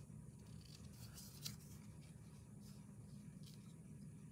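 Scissors cutting patterned paper: a few faint, short snips over a low steady hum.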